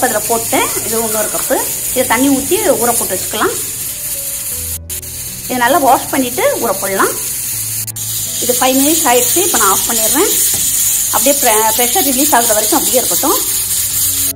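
A voice in phrases over what sounds like background music, with a steady high hiss underneath throughout.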